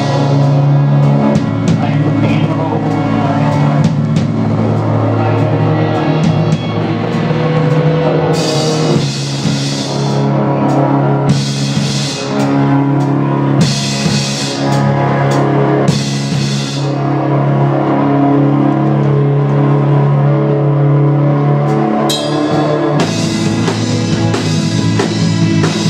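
Live instrumental progressive rock band playing, with electric guitar, bass, keyboards and drum kit over long held low notes. Cymbals come in with bright crashes in patches through the middle, and the held low notes change near the end.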